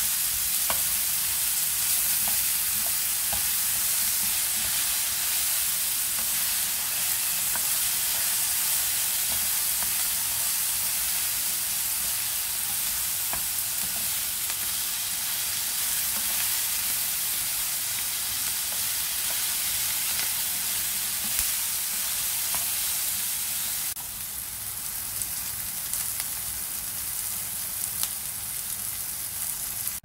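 Asparagus, mushrooms and garlic sizzling in oil in a nonstick frying pan, stirred with a wooden spatula that gives occasional light clicks and scrapes against the pan. The sizzle drops somewhat in level near the end.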